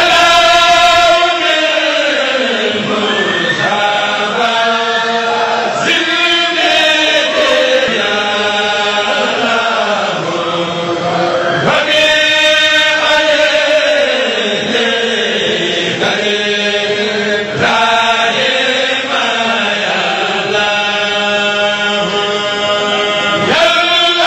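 Men chanting a sindidi, a Mouride Sufi devotional chant, in long held phrases that swell and fall in pitch, each lasting a couple of seconds.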